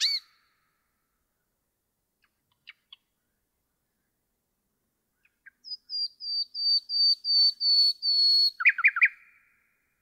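Common nightingale singing. The end of one strophe comes right at the start, then a few soft single notes. A new strophe follows: about nine pure repeated whistles swelling steadily louder, ended by three quick sweeping notes.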